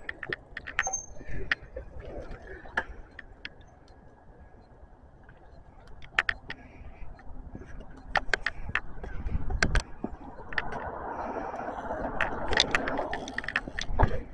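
Bicycles rolling on an asphalt street: scattered sharp clicks and rattles from the bikes, with a low thump just before ten seconds in and a steady rushing noise over the last few seconds.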